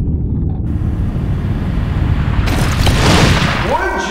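Intro sound effect under an animated logo: a loud, deep, continuous rumble of booms, with a whoosh that swells from about two and a half seconds in and peaks near three seconds before it fades.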